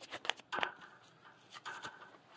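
A wire cattle-panel door being swung open: a few light metallic clicks and rattles, with two brief rustles, about half a second in and near the end.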